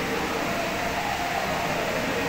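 Steady background noise of the room, an even hum without any cue strike or ball click.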